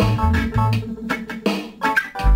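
Home-recorded reggae instrumental: a bass guitar playing low held notes under short, repeated guitar chord strikes.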